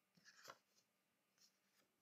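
Near silence, with a faint brief rustle of paper bills being handled about half a second in.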